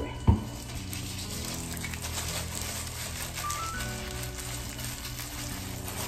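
Gloved hands working hair dye into locs, a steady fine crackling noise, over soft background music with held chords. One sharp knock about a third of a second in.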